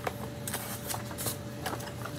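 Quiet rustling of paper and cardboard with a few light clicks and taps, as a paper instruction sheet is handled and lifted out of a cardboard box.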